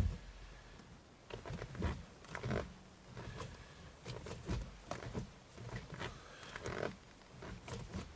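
Gear lever and gearbox of an MGB GT being worked, giving a run of irregular short clunks and grating knocks about every half second to second.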